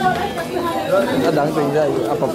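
Many people chattering at once in a large hall: overlapping conversation with no single voice standing out.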